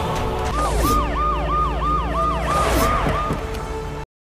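Police vehicle siren sounding in a rapid rising-and-falling yelp, about three cycles a second.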